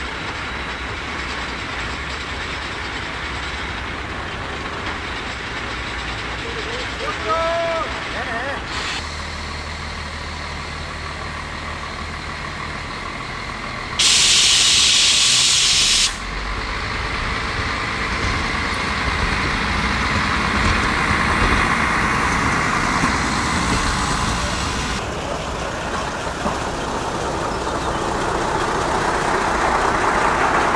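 Diesel railcars at a station: about halfway through, a loud burst of compressed air hisses for about two seconds, typical of a railway air brake or air reservoir venting. After that, a low diesel engine rumble builds as a railcar set moves off.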